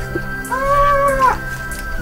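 Background music with steady held notes; about half a second in, one drawn-out high call rises, holds and falls away for under a second.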